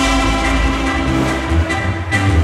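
Live band dance music: a sustained chord held over a steady bass line, easing off near the end.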